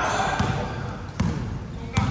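A basketball bouncing on an indoor court during play: a few sharp bounces, the clearest two in the second half about three-quarters of a second apart, the last the loudest, over players' voices in the hall.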